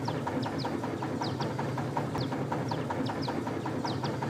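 A small boat's engine running steadily with a fast, even ticking, heard over open water. Short high falling chirps recur over it throughout.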